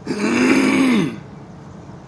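A man's single wordless vocal sound, like a drawn-out grunt, held for about a second at a steady pitch that drops away at the end.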